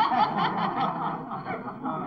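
Several cartoon voices snickering and chuckling together, a small group laughing at someone's mishap.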